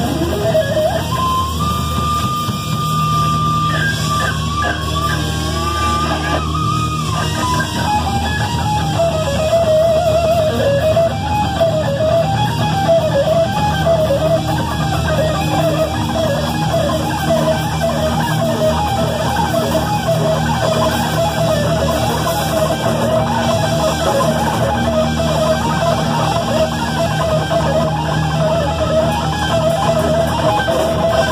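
Live neoclassical heavy-metal instrumental led by a distorted Stratocaster-style electric guitar. After a pitch dive at the start, it holds one high sustained note for about five seconds, then plays fast, rapidly alternating runs over a steady low backing.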